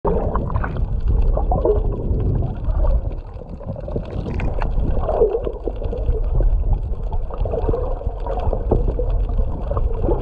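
Underwater sound over a coral reef: a low, muffled rumble of moving water with gurgles and many small clicks.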